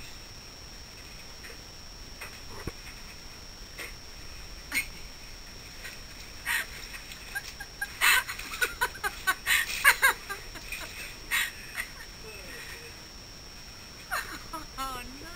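Water squelching and spurting out of the legs and boots of a flooded drysuit as the wearer steps in it: a run of sudden wet bursts, loudest in the middle. The suit is full of water because it was left unzipped.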